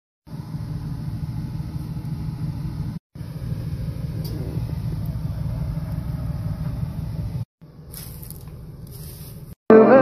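Pots of meat broth boiling hard on a stove: a steady low rumble with a faint hiss, in three clips cut one after another, the third quieter. Music comes in just before the end.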